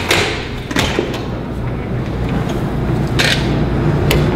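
Steady low rumble of background noise in a basement corridor, with a few sharp clicks and knocks near the start and a short hissing rustle about three seconds in.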